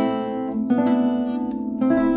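Hermann Hauser I 1923 contraguitar, a spruce-top, maple-bodied classical guitar with a second neck of extra bass strings, played in short phrases. Plucked notes ring over a sustained low note, with new notes struck about two-thirds of a second in and again near the end.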